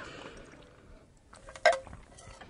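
A person drinking in gulps from a glass mason-jar mug: soft swallowing, with one short louder gulp or sound near the end.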